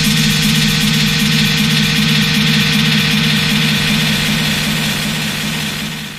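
Electronic dance-music remix with the drums dropped out, leaving a held low synth chord with a fluttering hiss on top. It fades out near the end as the track closes.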